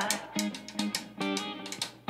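Country-leaning band music in a gap between sung lines: guitar over bass and a steady drum beat.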